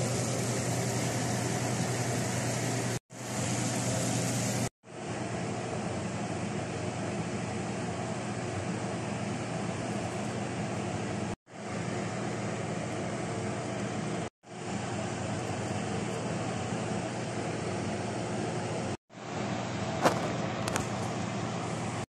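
A steady rushing, fan-like noise with a low hum underneath, cutting out for an instant several times. A short sharp click near the end.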